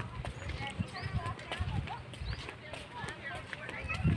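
Small birds chirping with many short rising and falling calls, over irregular low thumps of footsteps on a paved path.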